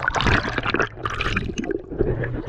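River water sloshing and splashing against a camera held at the waterline as it dips under the surface, in two rushes of noise with a short lull about a second in.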